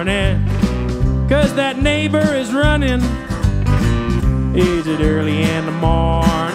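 Live rock band playing over a steady drum and bass groove, with electric and acoustic guitars and a lead line that bends and wavers in pitch.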